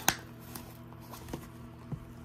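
A fabric and faux-leather wallet being handled: one sharp click just after the start, then a few faint taps and rustles as it is opened and its paper insert is taken out. A mini fridge hums faintly and steadily underneath.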